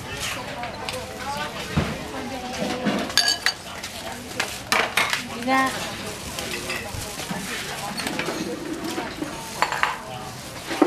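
Dishes and metal utensils clinking and clattering in a run of sharp, ringing clinks, with voices chattering in the background.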